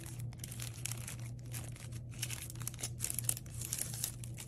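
Thin white wrapping crinkling and rustling in the hands as it is pulled open around a pair of sunglasses, in irregular bursts of crackle that are loudest about three seconds in.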